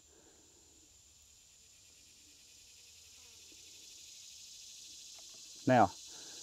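Near silence with faint outdoor ambience: a steady, high insect drone, likely crickets, slowly getting a little louder. A single spoken word comes near the end.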